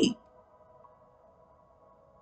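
The last syllable of a woman's speech, then near silence with a few faint steady tones.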